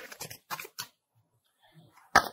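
Tarot cards being shuffled: a few soft taps and clicks in the first second, then near quiet.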